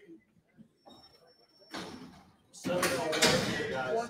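Indistinct voices, coming in loud about two and a half seconds in after a near-quiet start, with a short burst of noise just before.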